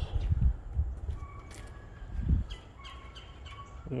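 Songbirds chirping in short repeated calls, with low thumps on the microphone near the start and about two seconds in.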